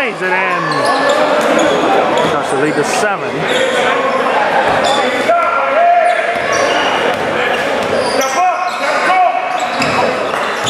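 Basketball bouncing repeatedly on a hardwood gym floor during play, with people talking in the background. The large gymnasium makes it echo.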